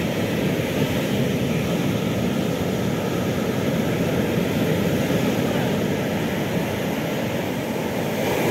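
Storm-driven surf breaking and washing up a sandy beach: a steady rushing noise of waves and foam with no separate beats.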